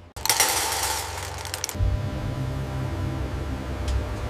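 A sudden rapid clatter of clicks for about a second and a half, followed by a steady low drone.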